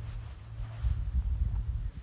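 Wind buffeting the microphone: an uneven low rumble with no other sound over it.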